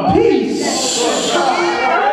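A man's preaching voice, amplified, with a long drawn-out hissing 's' from about half a second in to a second and a half in.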